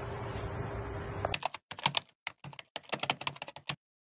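Computer-keyboard typing sound effect: a quick, irregular run of dry key clicks with dead silence between them. It starts about a second in and stops just before the end, after a moment of low room tone with a faint hum.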